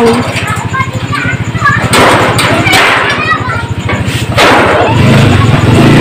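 Small motorcycle engine idling with a steady low pulse, then running louder about five seconds in as it is given throttle.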